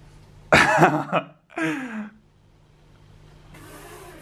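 A man's loud, shocked vocal outburst about half a second in, followed by a short groan that falls in pitch, reacting to a scary gift.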